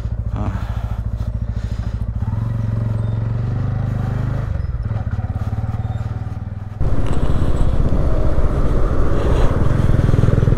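TVS Ronin single-cylinder motorcycle engine idling with a steady low pulse, then pulling away about two seconds in. About seven seconds in it abruptly becomes louder, running at road speed with wind rush over it.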